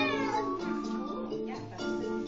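Children's dance music playing, with a short high squeal from a small child that rises and falls in pitch near the start.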